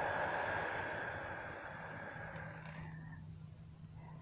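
A long, slow exhale, a soft rush of breath that fades away over about three seconds, as part of a guided deep-breathing exercise.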